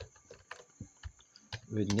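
Computer keyboard typing: a few scattered keystroke clicks, unevenly spaced.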